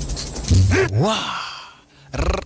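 A man's breathy, drawn-out exclamation 'waa'. Its pitch rises and falls twice about half a second in, then it tails off into a fading breath.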